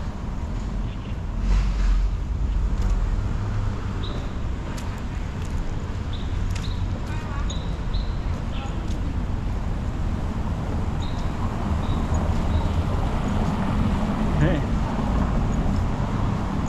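Outdoor street ambience: a steady low rumble of city traffic with indistinct voices of people nearby.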